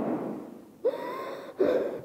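A man gasping, with short breathy voiced sounds in two or three bursts, close to the microphone.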